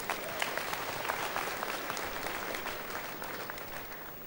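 Church congregation applauding, many hands clapping at once, thinning out toward the end.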